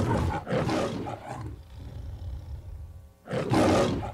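Big-cat roar sound effect. One roar fades out over the first second and a half, and a second, shorter roar comes just over three seconds in.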